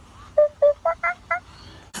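Electronic plush toy monkey giving five short, high-pitched chirping notes in quick succession, about four a second.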